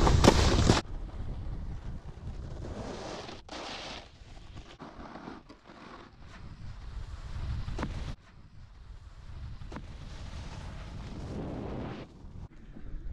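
Wind rushing over the microphone and a snowboard sliding over packed snow. The rush is loud at first and drops sharply to a quieter hiss about a second in, with a few faint knocks later.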